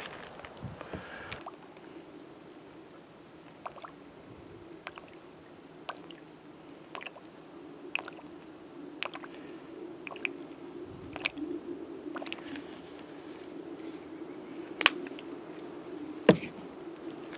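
Light, scattered clicks and taps of backpacking gear being handled: a small alcohol stove being set up and filled from a plastic squeeze bottle, with one sharper knock near the end. A faint steady hum runs underneath.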